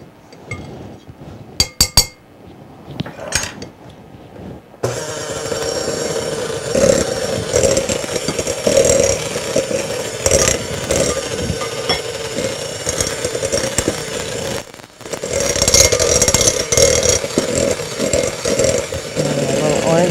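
A General Electric hand mixer starts suddenly about five seconds in and runs steadily, its beaters working a quick-bread batter in a bowl; it cuts out briefly about ten seconds later, then runs again. Before it starts there are a few light clicks.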